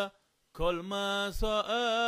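A man chanting solo in the Yemenite Torah-reading style. He breaks off briefly, then takes up the chant again about half a second in on a long, nearly level note. There is a short low thump about a second and a half in.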